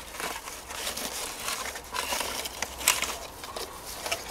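Grass and leaves rustling and crackling as they brush against the camera, with scattered handling clicks, the sharpest a snap about three seconds in.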